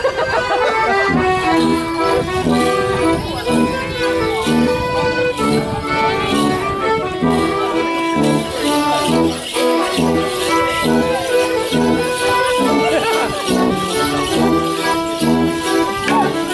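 An accordion plays a lively traditional morris dance tune, a steady melody over a regular bass pattern. In the second half, wooden morris sticks knock together in time with it.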